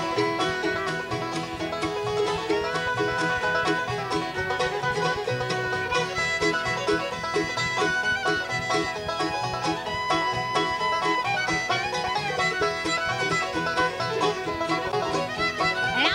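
Bluegrass band playing an instrumental intro on banjo, fiddle, mandolin, acoustic guitar and upright bass.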